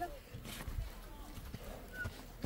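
Faint footsteps on dry, stony dirt ground, a few soft irregular thumps.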